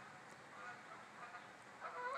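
Near silence: faint outdoor background hiss.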